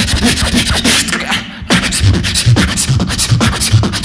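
A beatboxer performing through a handheld microphone and PA: a fast, dense rhythm of sharp percussive hits over deep bass tones. The rhythm breaks off briefly about a second and a half in, then drops back in.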